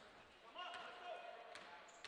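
Faint gym sound of a basketball being dribbled on a hardwood court, with a few distant voices.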